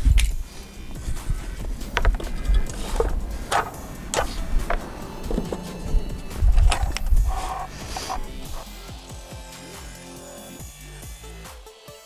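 Background music with a scatter of clicks and a few dull thumps as a wooden riser board is handled and set against a miter saw's fence. The saw itself is not running.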